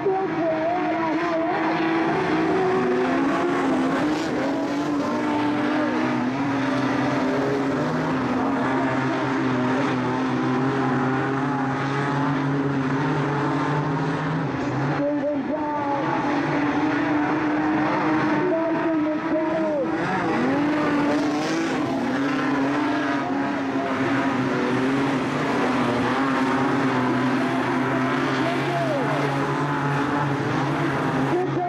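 Engines of a pack of modified sedan race cars running together on a dirt speedway: a continuous, steady engine drone, its several tones shifting in pitch now and then as the cars lap.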